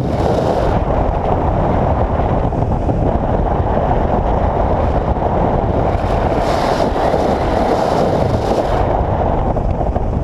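Wind rushing over an action camera's microphone during fast speed-wing flight: a loud, steady rumble with a brighter hiss swelling at the start and again from about six to nine seconds in.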